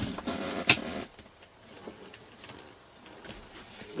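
Handling noises in a truck cab as things are moved and set down: scuffing and rustling with a sharp knock just under a second in, then fainter rustles and light ticks.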